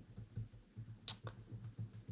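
A couple of faint, sharp clicks a little over a second in, against a quiet room.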